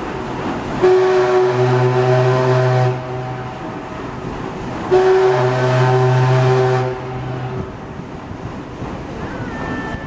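Paddle steamer Waverley's whistle sounding two long blasts, each about two seconds, a couple of seconds apart, several notes sounding together as a chord, as she departs the pier.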